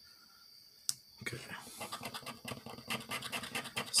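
Round scratcher token scraping the latex coating off a lottery scratch-off ticket in quick, repeated strokes, starting about a second in after a single click.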